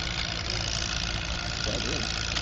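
Allis-Chalmers WD tractor's four-cylinder engine running steadily, with no revving.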